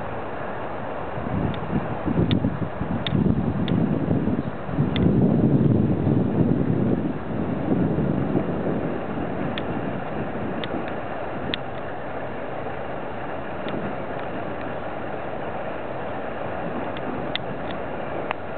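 Wind buffeting the microphone in low gusts over a steady outdoor rush, loudest in the first half, with faint short high peeps scattered throughout.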